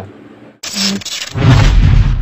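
Channel intro sound effect: a sudden loud rush of noise about half a second in, swelling into a heavy low boom near the end.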